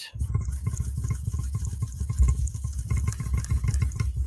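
Steel wool being scrubbed over a panel coated in pouring medium to knock back its gloss, heard as a low, uneven rubbing rumble.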